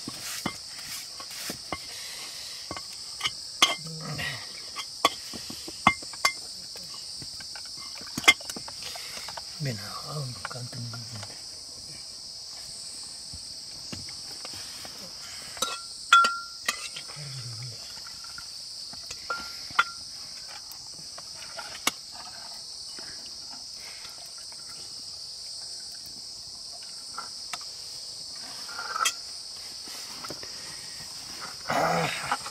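Steady high-pitched chirring of insects, with scattered sharp clicks and clinks of utensils against cooking pots at a wood fire.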